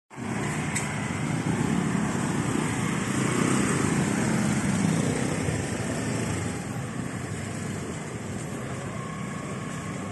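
Motor scooter engines running close by in a street. The sound is loudest over the first half and eases off after about six seconds.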